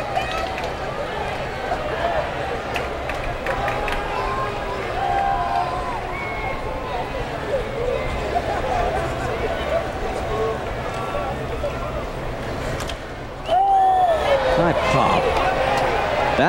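Ballpark crowd murmuring and chattering between pitches, with scattered shouts and whistles. Near the end the crowd noise suddenly gets louder as the batter swings and pops the ball up.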